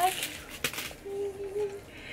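Packing paper rustling as it is pulled out of a new bag, a sharp click, then a woman humming a short steady "mm".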